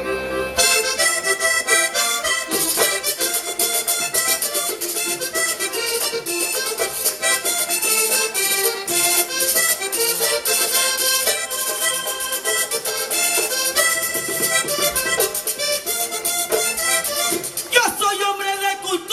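Vallenato band playing an instrumental passage led by a button accordion, with caja drum and guacharaca scraper keeping a quick, steady rhythm. The music comes in about half a second in, after a brief lull.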